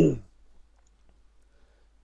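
A man's voice trailing off at the end of a word, then a few faint computer-mouse clicks over quiet room tone.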